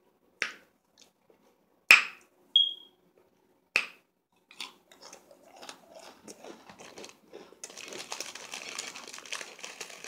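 Close-miked mouth sounds: a few sharp wet smacks or pops, one with a brief squeak, then crunchy chewing of a lemon cookie. The chewing begins about halfway through and grows louder and denser near the end.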